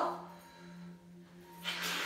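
Quiet ambient background music holding one steady low tone with overtones above it.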